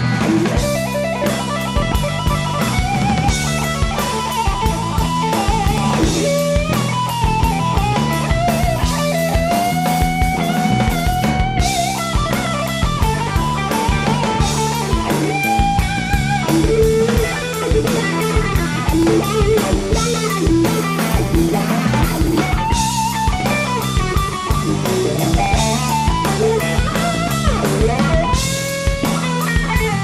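Live blues-rock trio: a distorted electric guitar through a wah-wah pedal plays lead lines with bent, gliding notes over electric bass and a drum kit.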